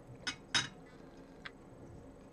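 A spoon working in a plate of runny oatmeal, making three short clinks and scrapes; the loudest comes about half a second in.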